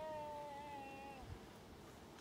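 A single drawn-out animal cry, rising slightly at the start, then held steady in pitch for just over a second before it fades.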